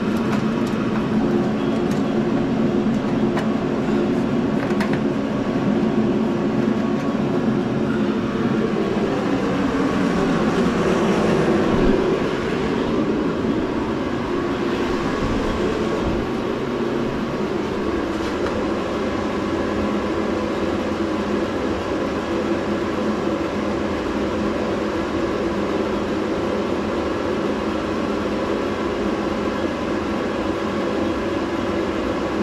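A steady mechanical drone with a hum of several pitches, shifting slightly about ten to twelve seconds in.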